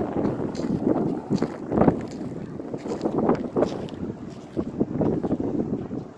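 Gusty wind buffeting the phone's microphone, rumbling and surging in irregular blasts.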